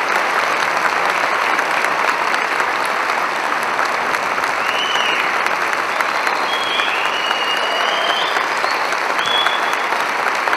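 Audience applauding steadily, with a few high gliding tones over it about halfway through and near the end.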